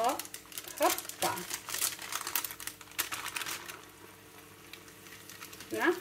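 Choux-pastry rings frying in hot vegetable oil in a small pan: the oil crackles and sizzles around the wet dough. The crackling thins out and gets quieter about four seconds in.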